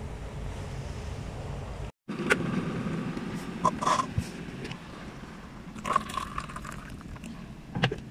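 A steady low hum, then after a break a few light knocks and scrapes as a paper cup is handled on a countertop, with two short high tones in between.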